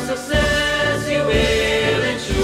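Choir singing long held chords over an accompaniment, with a low beat about once a second.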